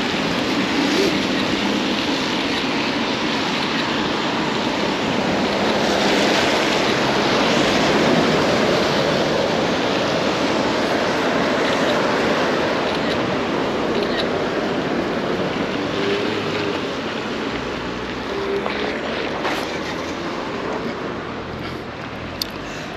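Road traffic passing on a wet road: a steady hiss of tyres on the wet surface that swells and eases, loudest about a third of the way through.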